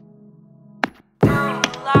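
Electronic music: a held synth chord fades, then a little under a second in a sharp percussive hit lands, the sound drops out for an instant, and a loud beat with chopped pitched sounds and further hits comes in.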